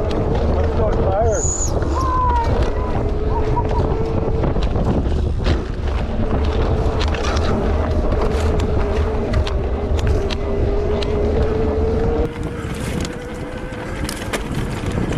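A motor vehicle's engine running at a steady, slightly wavering pitch, with heavy wind rushing over the microphone. The engine note and the overall level drop a little near the end.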